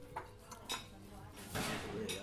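Café ambience: scattered clinks of dishes and cutlery over faint chatter, with a louder rush of noise about one and a half seconds in.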